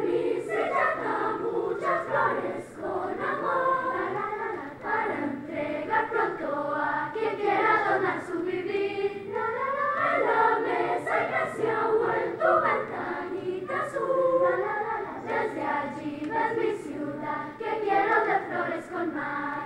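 Children's choir singing, the voices carrying on without a break.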